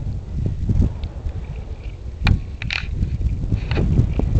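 Wind buffeting the microphone with a low rumble, a single sharp click a little past halfway, and a pickup truck approaching on the road, growing louder near the end.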